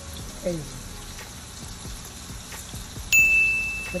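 Chicken breasts frying in oil in a skillet, a steady low sizzle with a few faint clicks. About three seconds in, a loud, steady, high electronic beep, added in the edit, sounds for just under a second.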